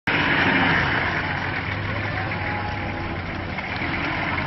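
Nissan Patrol 4x4's engine running at low revs as the vehicle moves slowly through deep mud: a steady low hum under a hiss, easing slightly in level.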